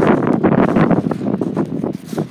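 Wind buffeting the microphone: a loud, rough rushing noise that eases off near the end.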